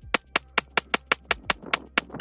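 Sig Sauer P365X Macro Comp 9mm pistol fired in a fast, steady string of about ten shots, roughly five a second.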